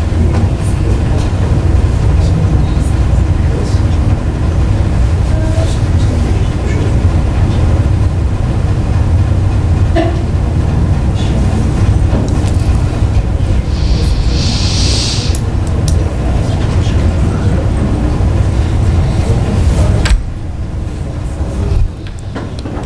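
Soundtrack of a promotional video played in the room: background music over a steady low rumble, with a brief hiss about two-thirds of the way through. The level drops shortly before the end.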